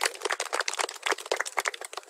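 A small group of people clapping, thinning out near the end.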